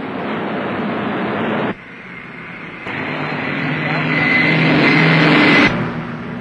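Piston aircraft engines droning, with a sudden drop in level about two seconds in. The sound then swells for about three seconds, with a steady low hum and a high whine, and cuts off abruptly near the end.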